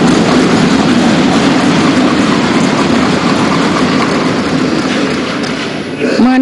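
A large gathering of members thumping their wooden desks in approval, a dense, continuous clatter of many knocks that tapers slightly near the end.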